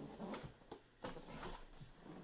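Large cardboard collector's box being handled: faint rubbing and a few light knocks as it is tilted and set down on a table.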